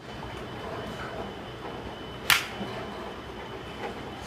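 Golf iron striking a ball: one sharp, loud crack a little over two seconds in, over a steady background hiss with a faint high whine.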